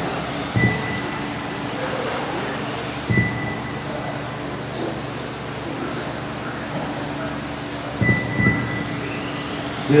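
Electric 1/10-scale RC touring cars running laps, their motors making faint whines that rise and fall as they pass. Three short high beeps sound, about half a second, three seconds and eight seconds in, each with a low thump.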